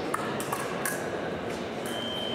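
Three sharp metallic pings of épée steel striking, each ringing briefly. Near the end a fencing scoring machine's steady electronic beep starts, the signal of a registered touch.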